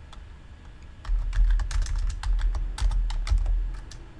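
Typing on a computer keyboard: a quick, uneven run of keystrokes that begins about a second in and carries on nearly to the end.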